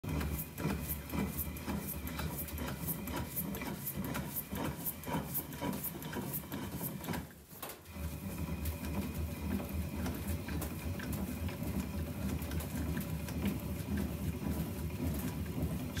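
Composite baseball bat being turned by hand through the rollers of a heated bat-rolling press, the rollers running with a rhythmic clicking and rubbing. There is a brief lull a little past halfway, then the rolling goes on.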